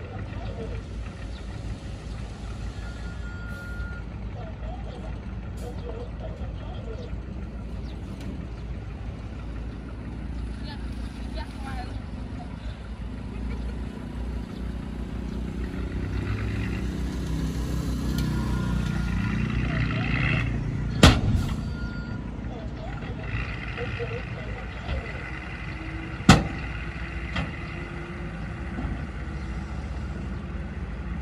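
A 5-ton dump truck's engine running, working harder and louder for several seconds in the middle. This is followed by two sharp bangs about five seconds apart, the first the loudest sound of all.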